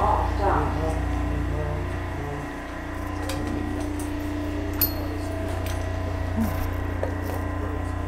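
Steady low hum and rumble inside a subway car, with a few light clicks and one sharp click about five seconds in.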